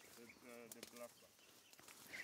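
Near silence, with a faint voice speaking briefly in the first second.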